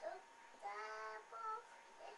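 A small child's voice singing softly: one held note of about half a second, then a shorter second note.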